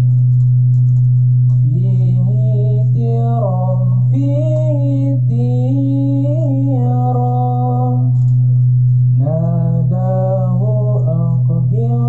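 A male voice sings a slow shalawat (Islamic devotional song) melody with gliding, ornamented pitch, over a steady low held drone.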